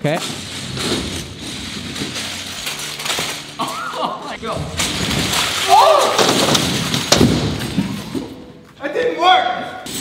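Dozens of small scooter wheels stacked on two long axles rolling across a concrete floor with a steady rumble, and a couple of sharp knocks a little past the middle. Short shouts break in twice.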